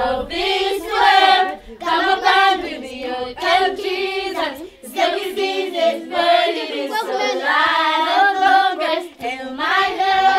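A group of children singing together without instruments, in short sung phrases one after another.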